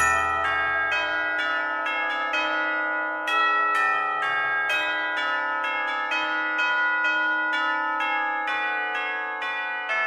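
Music: a chiming bell part striking a steady run of ringing notes, about two or three a second, with no voice, the low end dropping away in the first second and the whole slowly fading.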